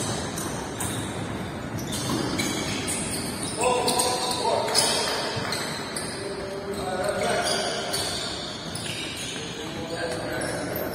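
Basketball practice in a large indoor hall: balls bouncing on the hardwood court amid players' indistinct voices and calls, with short pitched sounds at about 4 seconds and again around 7 seconds.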